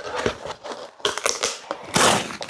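Corrugated cardboard crackling and tearing as it is pulled away from a glass plate, held on by cured resin squeeze-out that has soaked through it. Irregular clicks and rasps, denser in the second half.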